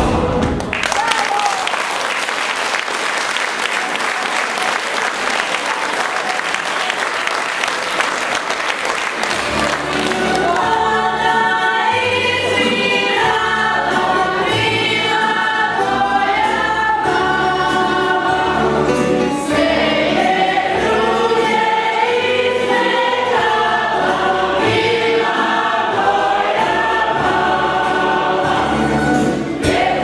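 Audience applause for about the first nine seconds, then a tamburica band with a double bass strikes up a lively folk dance tune with a steady bass beat, with voices singing along.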